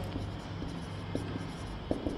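Marker pen writing on a whiteboard: faint strokes with two light taps, about a second in and near the end, over a steady low hum.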